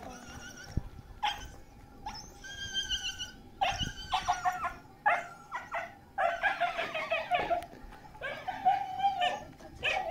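A dog whimpering and yelping in a run of short, high calls with brief pauses between them.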